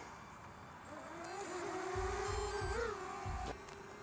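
Connex Falcore HD FPV racing drone's motors and propellers spinning up about a second in and holding a steady whine as it lifts off, the pitch rising briefly near three seconds.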